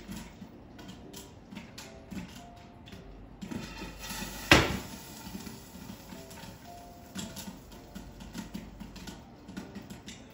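Popcorn kernels popping irregularly inside a lidded frying pan, with one much louder sharp crack about halfway through.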